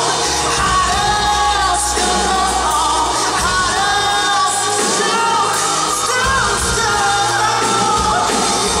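Live pop band: a male lead vocal sung into a handheld microphone over keyboards and drums, heard through the hall's PA.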